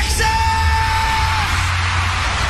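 A live pop-rock band plays, and a voice slides up into one long, high held shout over the music.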